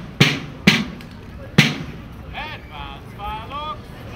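Rope-tension field drum struck in loud single beats about half a second apart; the last stroke comes after a longer gap, about a second and a half in, and then the drumming stops.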